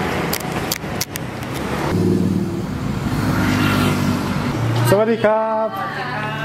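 Street traffic with a motor vehicle's engine running close by for a few seconds, over rough noise from a faulty camera microphone.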